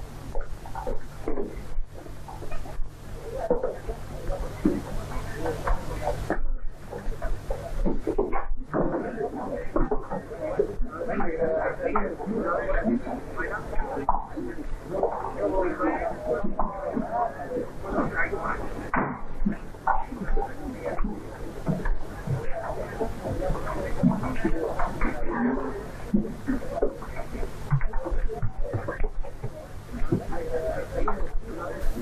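Indistinct chatter of many voices talking over one another, with no single voice standing out, over a steady low electrical hum on an old film soundtrack.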